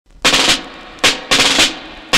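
Snare drum rolls opening a song played from a 45 rpm record. There is a short roll, a single stroke about a second in, then another roll.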